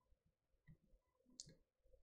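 Near silence, with two faint clicks a little under a second apart.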